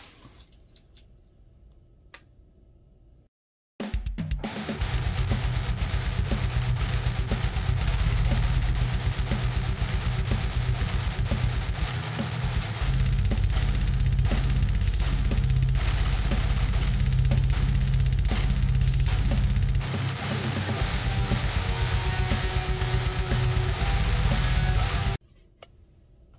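Background music with electric guitar and a drum kit, with a fast, driving bass drum. It starts about four seconds in, after a short cut to silence, and stops shortly before the end.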